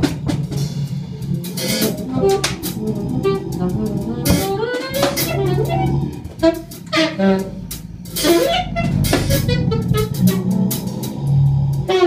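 Free-improvised music from a trio of daxophone, alto saxophone and drum kit: sliding, bending pitched lines over scattered drum and cymbal strikes.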